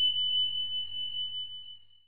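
A single high, bell-like ding, struck just before and ringing on as one pure tone that slowly fades away near the end.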